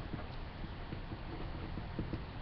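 Pencil writing block capital letters on paper: a faint, irregular run of short strokes and taps.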